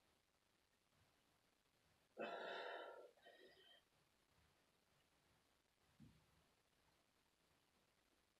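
Near silence broken, about two seconds in, by one breathy sigh of effort from a woman doing crunches, with a fainter breath just after it.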